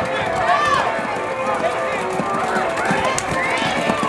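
Several people shouting and calling at once, cheering riders on, over the hoofbeats of ponies galloping through the weaving poles.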